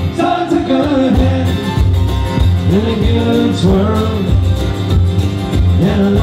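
Live Celtic folk band playing: strummed acoustic guitar and a steady beat under a bending melody line.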